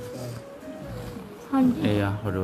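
Faint talk under a single held, slowly falling high note for the first second and a half, then a voice starts speaking loudly near the end.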